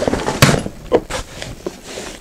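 Bumbleride Indie Twin double stroller's aluminium frame being folded forward: a sharp clack about half a second in as it collapses, then a few lighter knocks and rattles.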